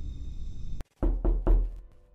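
Music that cuts off abruptly, then three heavy knocks on a door in quick succession about a second in.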